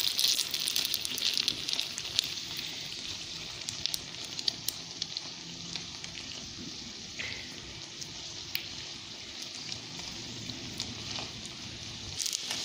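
Moglai paratha shallow-frying in oil on a flat griddle: a steady sizzle with scattered pops and crackles, a little louder in the first couple of seconds, then settling.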